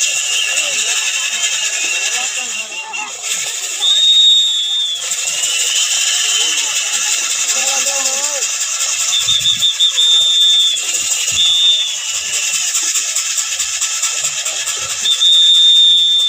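Wooden kharas flour mill squealing as bullocks drive it round, with high drawn-out squeals recurring every few seconds over the murmur of a crowd.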